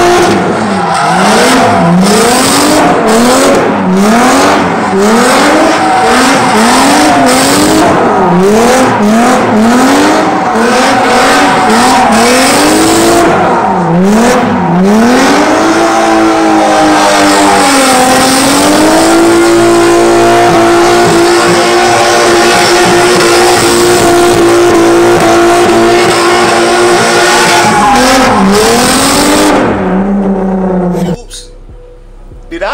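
Car doing donuts: the engine is revved up and let fall back about once a second, then held at high revs for about ten seconds as the rear tyres spin and squeal, with a few more rev pulses near the end.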